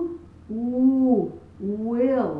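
A woman's voice sounding a held "oo" vowel twice, each one steady and then falling off in pitch at the end: a demonstration that the consonant W begins as an "oo".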